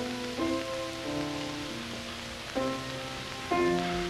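Slow, sustained chords played on a keyboard instrument, changing at uneven intervals, over a steady hiss.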